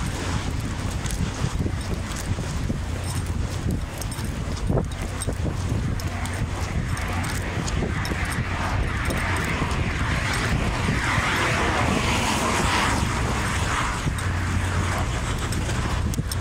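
Outdoor street noise on a handheld phone, with a steady rumble of wind on the microphone and many small handling knocks. A louder hiss swells in about halfway through and fades a few seconds before the end.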